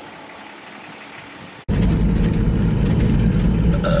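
A faint outdoor hush, cut off abruptly about two seconds in by loud, steady engine and road noise heard from inside the cab of a Toyota LandCruiser 60 Series driving along a gravel track.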